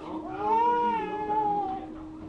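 Baby's single drawn-out cry, rising and then slowly falling in pitch, lasting about a second and a half.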